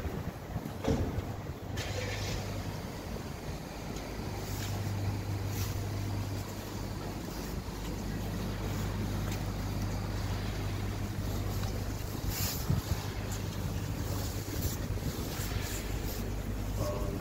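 Vehicle engine running with a steady low hum, with some wind noise on the microphone and a few brief clicks and knocks.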